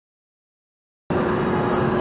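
Dead silence for about a second, then a steady background hum and hiss of an indoor room cuts in abruptly and holds evenly.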